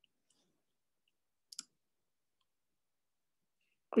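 A single short computer-mouse click about one and a half seconds in, with near silence on either side of it.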